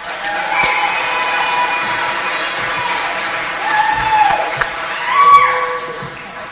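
Audience applauding and cheering, with several whoops and shouts over the clapping; loudest a little after five seconds in.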